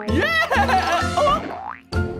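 Cartoon boing sound effects of a bounce on springy jelly, over playful background music, with a rising whistle-like glide near the end.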